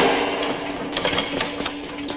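Movie gunfire: an irregular series of shots, the loudest right at the start, then scattered single shots, with a steady low tone underneath.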